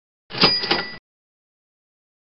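Short editing sound effect at a slide change: two quick metallic strikes about a quarter second apart, with a bright ringing tone over them, lasting under a second.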